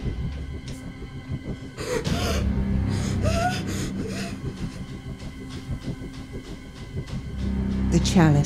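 Dark, droning horror film score with steady held tones. Muffled whimpers and gasps from a gagged woman come in about two to four seconds in.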